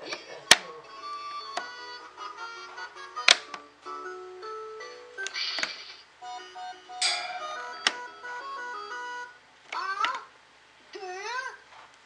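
Electronic toy tune from a Mickey Mouse activity table's speaker, set off by pressing its numbered button: a busy jingle of short bright notes broken by a few sharp clicks, turning to warbling sliding tones near the end.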